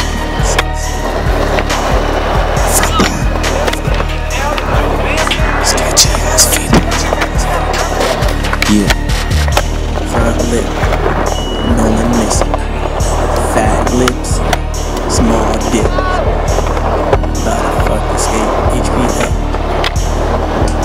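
Music with a steady heavy bass beat, mixed with skateboard sounds: wheels rolling on concrete and repeated sharp clacks of board pops, rail contact and landings.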